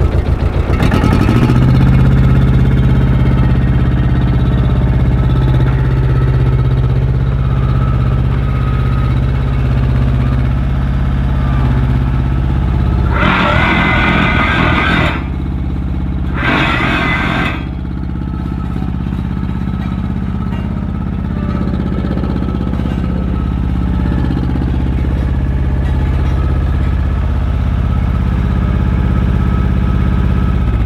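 Hamm HD10 tandem road roller's diesel engine running steadily as the roller drives over paving stones with its drum vibration engaged. The engine note steps up about a second in, and two louder bursts of noise come about 13 and 16 seconds in.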